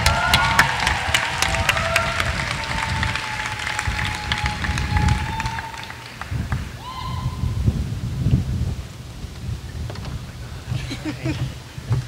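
Audience clapping and cheering, with a few drawn-out whoops, dense at first and thinning out over the first half.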